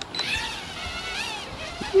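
Holy Stone HS190 mini drone's tiny electric motors and propellers whining as it lifts off. The pitch rises and falls as the throttle changes.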